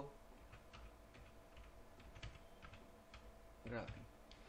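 Computer keyboard typing: a faint string of separate keystrokes as a word is typed, over a low steady hum.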